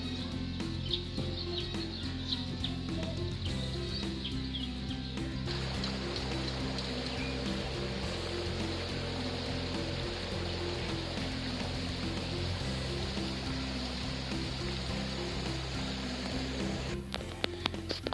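Background music with a steady, blocky bass line. Birds chirp over it for the first few seconds, and a steady rushing hiss joins about five seconds in. A few clicks come just before the end.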